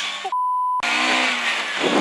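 A half-second pure bleep tone blanking the sound, typical of a censor bleep over a word, then the rally car's engine and road noise resume inside the car.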